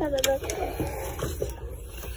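A toddler's drawn-out vocal sound slides down in pitch and stops just after the start. A couple of sharp clicks follow, then a low shop background.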